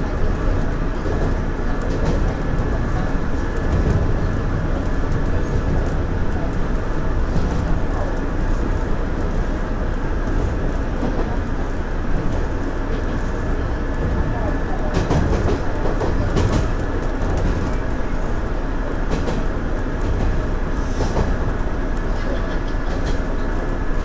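Running noise of a JR 117 series electric train heard from behind the driver's cab: a steady rumble of wheels on rail, with clicks and knocks as the wheels pass over rail joints and points, clustered about two thirds of the way through.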